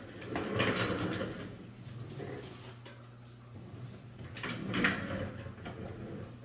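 Two spells of rustling and handling noise, about half a second in and again around four and a half seconds, over a steady low hum.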